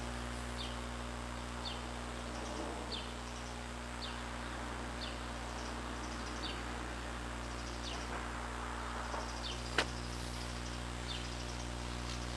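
Outdoor ambience: a bird repeating a short, high, falling chirp about once a second over a steady low hum, with one sharp click about ten seconds in.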